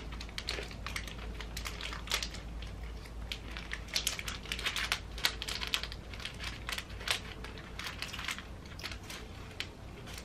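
Small plastic snack wrapper crinkling and crackling in the hands as it is opened and handled, a scatter of short crisp clicks.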